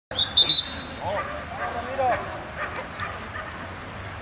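German Shepherd dogs on leash yipping and whining, with a few high squeals in the first half-second and short rising-and-falling whines a second or two in.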